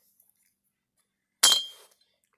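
A single sharp metallic clink about one and a half seconds in, with a short high ring that dies away quickly, as a long tool bit is laid down onto a finned two-stroke cylinder.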